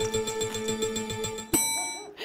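Game-show sound effect for a topic generator: a steady electronic tone pulsing about ten times a second, then, about one and a half seconds in, a click and a bright bell ding that rings on.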